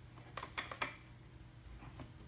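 A quick cluster of about four light metallic clicks and taps, with a faint one near the end, as metal mounting hardware is handled and lined up in the dirt bike's front fork.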